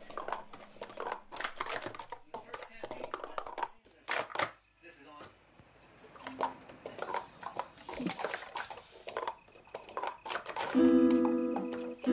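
Plastic sport-stacking cups clattering on a stack mat in quick runs of light clicks as they are stacked up and brought down, with a short lull about four to five seconds in. Near the end, loud plucked-string music comes in.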